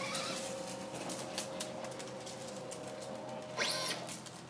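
Traxxas Stampede VXL radio-controlled truck's brushless Castle motor giving a steady whine as the truck drives on oversized tires. A brief louder hiss comes near the end.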